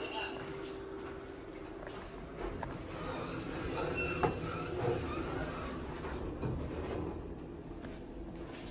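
Schindler 5500 elevator car interior: a car button is pressed about halfway through, giving a click and a short high beep, over a steady low hum.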